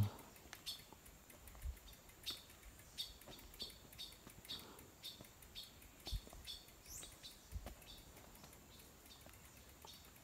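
Faint bird chirping: a series of short calls, one or two a second, with a rising note about seven seconds in, and a few soft low thumps.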